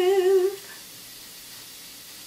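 A woman's unaccompanied voice holds one long note with an even vibrato, the closing note of the song. It fades out about half a second in, leaving faint room tone.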